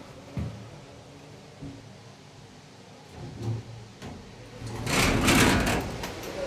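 Hotel lift running with a low hum and a few soft knocks, then its metal doors sliding open with a loud, fast rattling clatter near the end.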